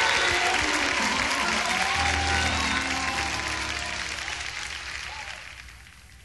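Live audience applauding while a band plays underneath. The applause and music fade away over the last few seconds.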